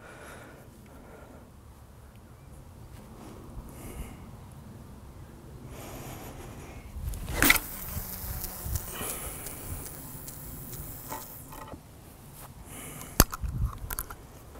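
A long-distance carp cast: the rod whooshes through the air about halfway in, then the line hisses off the reel spool and through the rod rings for about four seconds as the lead flies out. A single sharp click comes near the end.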